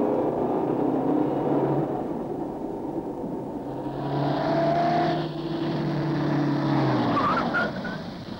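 Car engine running steadily as the sedan drives, with tyre and gravel noise growing louder about four seconds in. Near the end the engine note drops away and a short rising squeal follows as the car slows.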